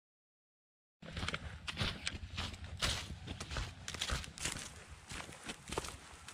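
Footsteps crunching through dry fallen leaves on a woodland path, starting about a second in after dead silence.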